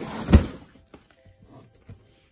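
Large cardboard shipping box slid and set down on the floor, with a brief scrape leading into one loud thump about a third of a second in, then a few faint light knocks.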